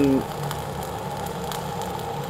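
Gas-shielded (dual shield) flux-cored arc welding with ESAB 7100 wire: the arc's steady crackling sizzle as a vertical pass is run, the wire weaving onto a backing plate. A low steady hum runs beneath it.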